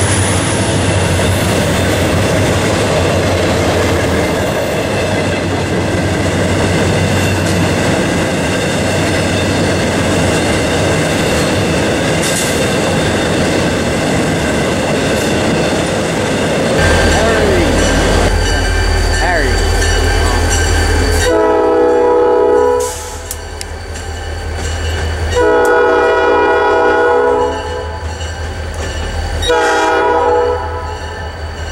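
A freight train of autorack cars rolling past, a steady rush of wheel and rail noise. About halfway through the sound changes to a diesel locomotive's low engine rumble, and its multi-chime horn sounds two long blasts, with a third starting near the end.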